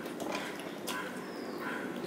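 Close-up eating sounds: wet chewing and lip-smacking clicks while fingers mix rice and fish curry on a steel plate, with sharp clicks just after the start and again just before a second in.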